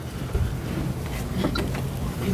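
A steady rushing noise with a low rumble, picked up by a table microphone.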